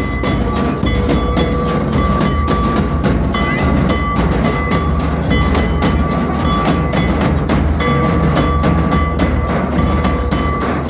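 Live Santali folk dance music: drums beaten in a fast, steady rhythm, with long held high notes from a wind instrument over them.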